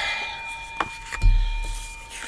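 Hand handling a coin over a wooden tabletop: faint rubbing, a sharp click under a second in, then a dull thump just after.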